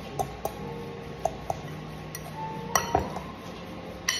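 A metal utensil clinking against a glass mixing bowl while stirring mashed sardines and onion: a handful of scattered light clinks, the loudest pair about three seconds in.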